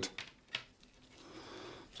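Faint rustling and a few light clicks from a thin plastic power cable being handled and unwound by hand.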